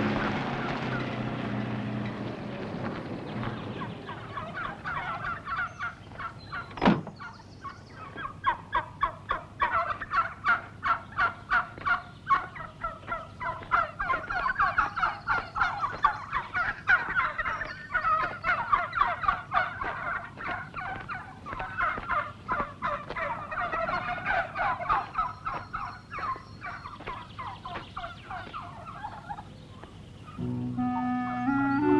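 A flock of domestic white turkeys gobbling, in rapid repeated calls that run on with little pause. There is a single sharp knock about seven seconds in.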